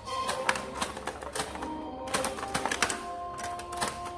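LEGO pinball machine in play: irregular sharp plastic clicks and clacks of the brick-built flippers and the ball striking the playfield parts, over music with held electronic tones.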